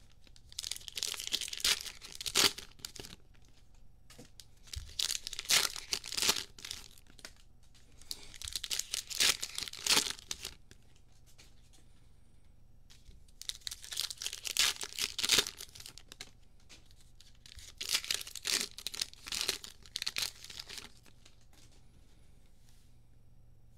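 Foil trading-card pack wrappers being torn open and crinkled by hand: about five bursts of crackling, each a second or two long, with short pauses between.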